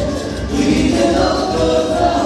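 Live dance band playing a song with singing over a steady beat.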